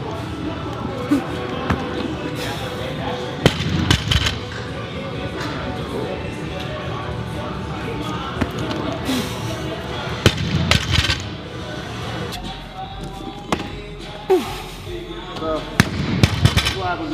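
Barbell loaded with bumper plates knocking and thudding on a rubber lifting platform during Olympic lifts, in two clusters of impacts about 4 and 10 seconds in and once more near the end, over steady background music.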